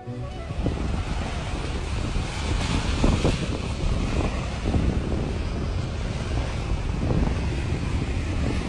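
Sea waves washing against a rocky shore, with wind buffeting the microphone as a steady low rumble.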